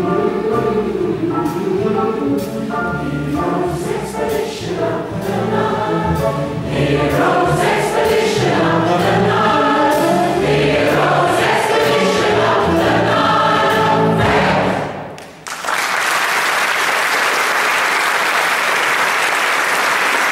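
Large mixed choir singing with band accompaniment, ending on a held final chord about fifteen seconds in; after a brief pause the audience breaks into steady applause.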